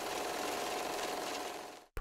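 A steady, noisy mechanical whirr used as a transition sound effect, cut off abruptly near the end.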